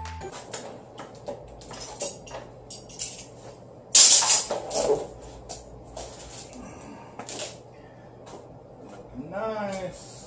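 Knocks, taps and rattles of PVC pipe and fittings being handled as a fabric fishing sail frame with foam pool-noodle floats is put together, with a louder rustling burst about four seconds in and a short wavering pitched sound near the end.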